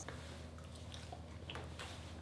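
Faint chewing of a bite of seared venison steak: a few soft mouth clicks over quiet room tone.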